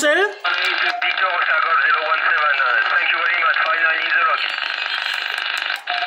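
A distant station's voice received on upper sideband through an 11-metre transceiver's speaker: thin, band-limited speech buried in static hiss. About four seconds in the voice gives way to hiss alone, which cuts off suddenly just before the end.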